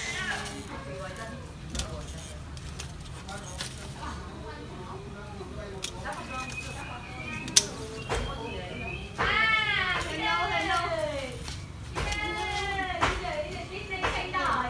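Pruning shears snipping twigs and leaves from a fig bonsai, a sharp snip every second or two. Near the end, two loud, high calls that rise and fall in pitch break in over the cutting.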